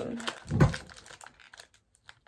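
A single soft knock about half a second in, then a few faint clicks and taps as small objects are handled and set down, dying away to near quiet.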